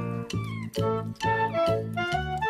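Background music with a steady beat, and a cat meowing once over it about half a second in, its call falling in pitch.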